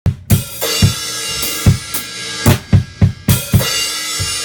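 Acoustic drum kit played with wooden sticks: bass drum, snare and cymbal strokes in an uneven practice pattern of about a dozen hits, with the cymbals ringing on between strokes. The last stroke falls a little before the end and the cymbal is left ringing.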